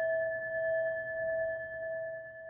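A struck singing bowl ringing out: a steady, clear tone with a higher overtone above it, slowly fading.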